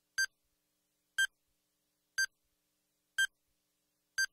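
Electronic countdown timer beeping: four short, high beeps, one each second, counting down the final seconds.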